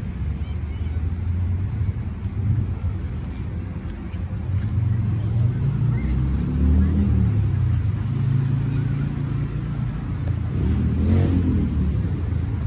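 Road traffic: a steady low rumble of cars going by, with one vehicle passing closer near the end.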